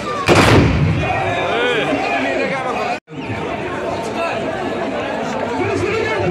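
One loud blast from a line of horsemen's muzzle-loading muskets (moukahla) fired together at the end of a tbourida charge, about a third of a second in, with a short fading tail. Crowd chatter goes on around it.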